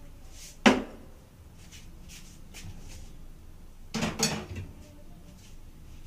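Kitchenware being handled: one sharp knock about half a second in, then a short clatter of knocks around four seconds in, with quiet between.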